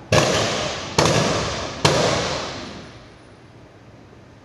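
Three rifle volleys of a ceremonial gun salute, each shot sharp and loud, a little under a second apart. Each rings on with long reverberation in a large hall, the last fading out about a second later.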